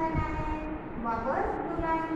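A voice holding long, pitched notes that slide up and down, hum-like rather than worded, with a few soft low knocks underneath.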